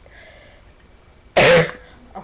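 A single short cough from the girl about halfway through, sharp and loud.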